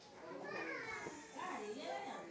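Children's voices talking and calling in the background, high-pitched and indistinct, with no clear words.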